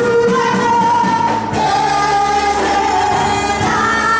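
Church praise-and-worship song: voices singing a slow melody with long held notes over instrumental accompaniment.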